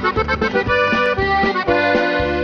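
Instrumental break in a norteño corrido: accordion playing a melodic run over a bass line with a steady beat, between sung verses.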